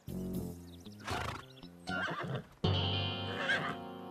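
A horse whinnying over background music.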